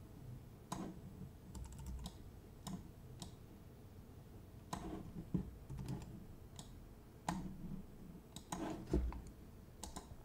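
Faint, irregularly spaced clicks of a computer mouse and keyboard, a dozen or so short taps, as photo-editing software is worked.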